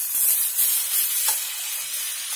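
Diced tomatoes landing in hot oil in a frying pan with fried bread cubes and sausage, sizzling and slowly dying down, with a single light spoon click a little over a second in.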